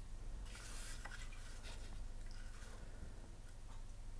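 Faint rustling and handling noise with a few light clicks, over a low steady hum.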